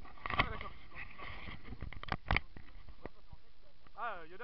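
Handheld camera knocking and rubbing against clothing and gear while its carrier walks, with a few sharp knocks, the loudest about two and a half seconds in, and faint voices in the background.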